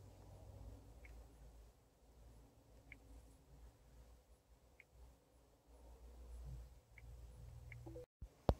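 Near silence: quiet car-cabin room tone with a few faint, widely spaced clicks.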